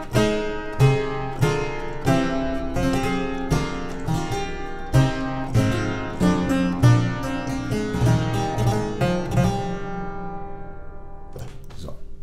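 Harpsichord playing a slow four-part chordal progression, a descending sequence harmonizing a falling scale, with each chord sharply plucked. The last chord rings and dies away about ten seconds in, followed by a few soft clicks.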